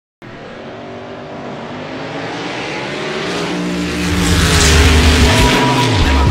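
Race car engine, growing steadily louder, with a heavy low rumble coming in about four seconds in.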